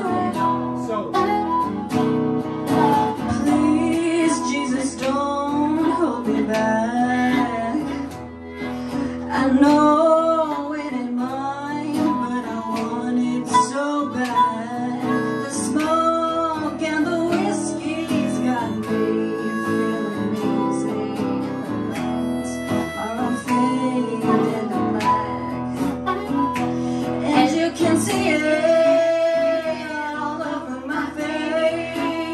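Live pop cover performance: female vocals over a backing with guitar, playing continuously.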